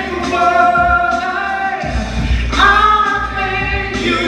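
Gospel vocal group of male and female voices singing a cappella, holding sustained chords in close harmony, with a new chord coming in about two and a half seconds in.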